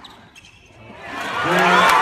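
A couple of sharp knocks of a tennis ball off rackets near the start, then a large arena crowd cheering, swelling quickly to loud in the second half as the point ends.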